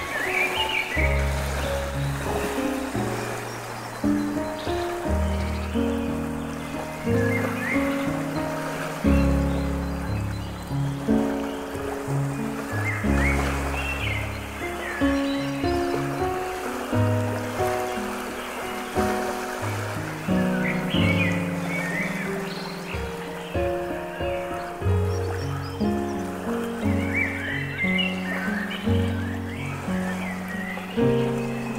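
Slow, soft piano music over a steady bed of running water, with short high chirps recurring every several seconds.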